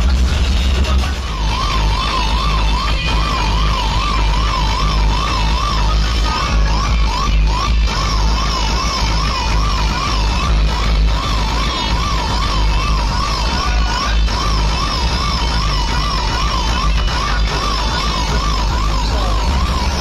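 A loud outdoor DJ sound system, built of truck-mounted speaker stacks, playing dance music with heavy bass. From about a second in, a siren-like warble rises and falls about twice a second over the music, with a few short breaks.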